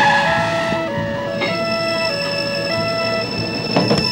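Tense background music of held electronic notes stepping between pitches about every half second, over steady vehicle engine and road noise, with a short rush of noise at the start.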